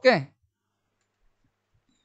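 A voice briefly says "okay", then near silence.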